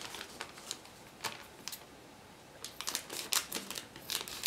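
Clear plastic bag around a model kit's sprues crinkling faintly in short, scattered crackles, with a quiet gap about halfway through before the crackles pick up again.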